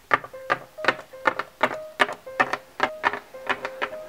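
Hard plastic toy figures tapped in steps across a tabletop, a steady run of sharp clicks about three a second, each with a brief hollow ring.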